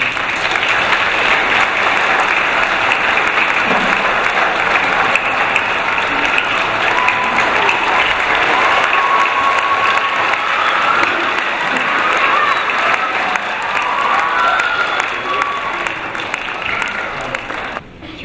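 A church congregation applauding steadily for a long stretch, easing slightly toward the end, with a few voices over the clapping in the middle.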